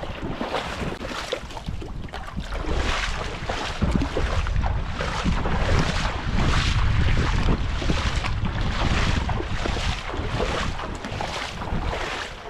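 Footsteps wading through shallow swamp water and mud, a splash with each stride. Wind buffets the microphone throughout, heaviest from about four seconds in until near the end.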